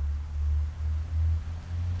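Low rumble of wind buffeting the microphone, surging and dipping in gusts.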